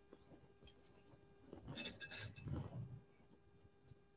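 Faint handling of plastic Wonder Clips being clipped onto an embroidery frame over fabric. Halfway through there is a short cluster of small clicks and rustles, with a light clink.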